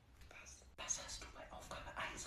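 Faint whispering voices, with a short click about three quarters of a second in.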